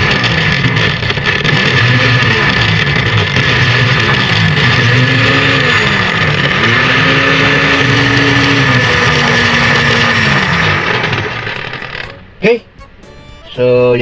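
Electric kitchen blender's motor running empty with its chopper bowl fitted: a loud, steady whir showing that the repaired blade drive now turns. It is switched off about twelve seconds in and stops quickly, followed by a short loud burst of sound near the end.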